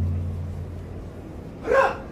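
The low ring of large taiko drums dying away in a pause between strikes. Near the end comes one brief shouted call from a drummer, a kakegoe before the next strike.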